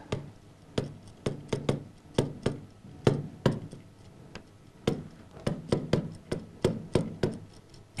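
Plastic stylus tip tapping and clicking on the glass of an interactive touchscreen display while handwriting on it: a string of short, sharp, irregular ticks, two or three a second.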